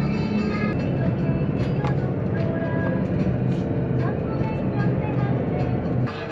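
Background music over the steady drone of a passenger ferry's engines, heard inside the cabin.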